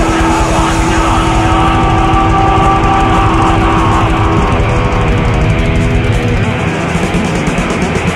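Live thrash metal band playing loud, with distorted electric guitars holding long notes over fast drumming. The heaviest low end drops away about six seconds in.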